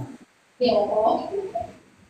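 A person's voice, speaking or making a drawn-out vocal sound for about a second after a brief pause.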